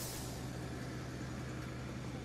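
Faint, steady low hum of a delivery truck's engine idling, with even background noise.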